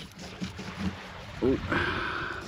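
Steady rushing of wind and small waves on an open beach, with a knife scoring slits through the scaled skin of a whole coral trout. A voice says "Ooh" near the end.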